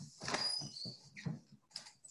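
A dog whining faintly in short high squeaks while a door is opened to let it out.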